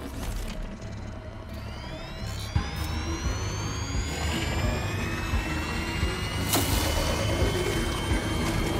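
Soundtrack of an animated sci-fi episode: tense music over a steady low rumble. Several rising whines begin about a second and a half in and keep climbing. There are sharp hits at about two and a half and six and a half seconds.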